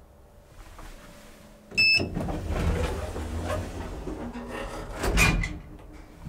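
Elevator car's sliding door closing: a short high beep with a click about two seconds in, a few seconds of rumbling door-operator noise, and a thump as the door shuts about five seconds in.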